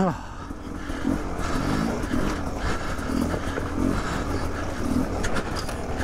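Beta 300 RR two-stroke dirt bike engine running at low revs, with the rider breathing hard in slow, rhythmic breaths.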